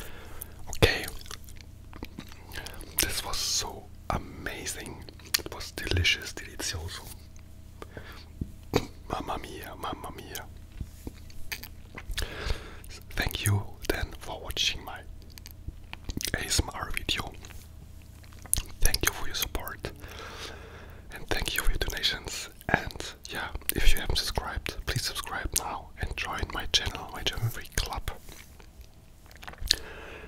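A man whispering close to a sensitive microphone, with frequent wet mouth clicks and smacks between the words.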